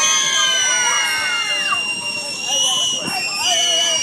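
A group of young children shrieking and shouting together, high-pitched and held, with many voices overlapping. It eases off a little about two seconds in, then rises again.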